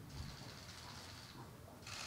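Hushed room tone with light, faint scratching of a ballpoint pen writing a signature on paper.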